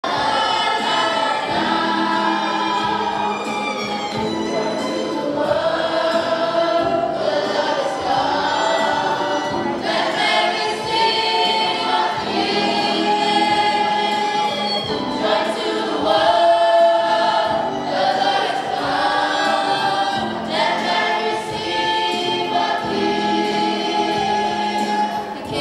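A choir of school-age voices singing together in phrases of held notes, with a violin playing along.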